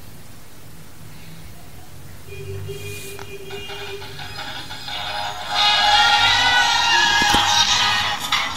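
A pop song playing out of a pair of headphones driven by a smartphone. It is faint at first, then grows louder as the volume is turned up, jumping to full, boosted volume about five and a half seconds in. A single knock comes near the end.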